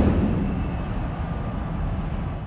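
Steady, rumbling background noise that slowly fades, with no speech.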